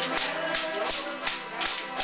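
A Newfoundland folk tune played on button accordion and acoustic guitar, with an ugly stick struck in time, its metal jingles rattling on the beat about four times a second.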